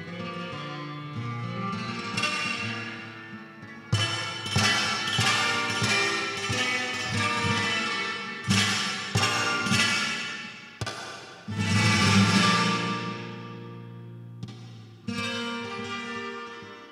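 Flamenco guitar playing a passage of plucked notes broken by several loud strummed chords that ring out and fade, four of them spread through the passage.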